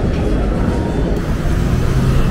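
Downtown street ambience: a steady low rumble of traffic. The background shifts abruptly about a second in.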